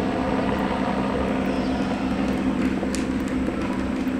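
A steady low mechanical hum with a constant drone and low rumble, from an unseen motor; a faint short click sounds once about three seconds in.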